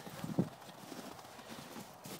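Footsteps crunching in snow: a few faint, irregular steps, one a little louder about half a second in.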